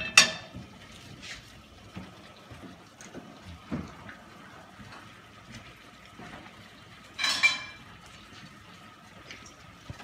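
Metal pots and pans clanking on a gas stovetop: a sharp clank right at the start and a second, ringing clatter about seven seconds in, with a few light knocks in between.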